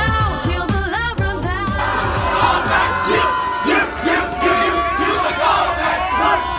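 Group singing for about the first two seconds, giving way to a crowd of people shouting and cheering loudly together.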